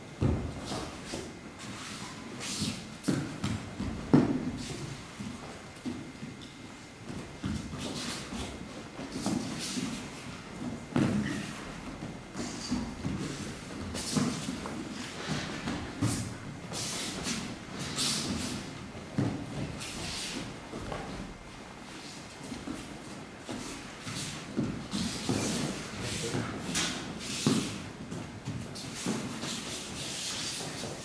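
Bare feet padding and sliding on tatami mats, with practice uniforms swishing and bodies landing on the mats in irregular thuds during a martial arts throwing demonstration; the loudest thump comes about four seconds in.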